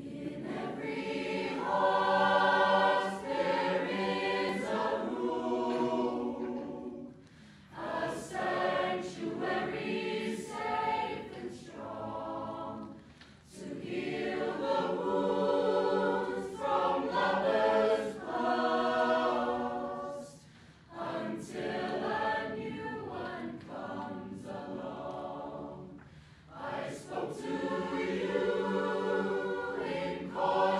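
A mixed choir of boys and girls singing, in phrases broken by short pauses about every six seconds.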